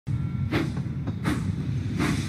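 Animated steam tank engine sound effect: slow, steady chuffing, two chuffs about three-quarters of a second apart over a low running rumble.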